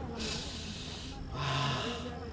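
A man drawing a long, deep breath in and then letting it out in a sigh with a slight hum: two breaths, the second starting a little past the middle.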